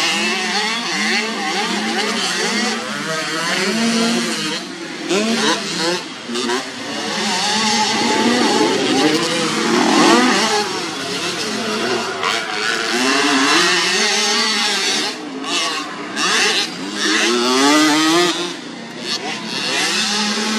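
Small youth motocross bike engines revving hard on a dirt track, the pitch climbing and dropping again and again as the riders open and close the throttle, with the sound dipping briefly several times.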